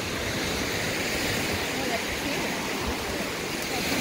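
Small waves washing onto a sandy shore, a steady rushing noise, with wind buffeting the microphone underneath.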